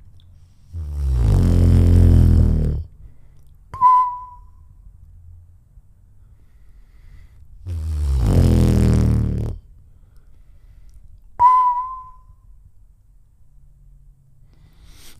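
Beatboxing into a handheld microphone: a loud, low, buzzing vocal bass of about two seconds, then a sharp click and a short high whistle. The pair is done twice.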